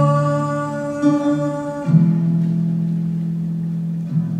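Solo acoustic guitar and a young woman's voice performing live: a held note and chord ring out and fade, and a new chord is struck about two seconds in.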